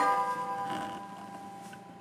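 A chord of bell-like chiming notes struck at the start and slowly dying away, a pause in a tinkling, glockenspiel-like melody.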